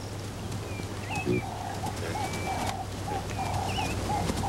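Birds calling: one bird gives a short, low call over and over in a quick, even rhythm, starting a little after a second in, while other birds add a few higher chirps and warbles.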